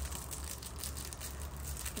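Faint rustle of a small foil lens-wipe sachet being held up and handled, over a steady low hum.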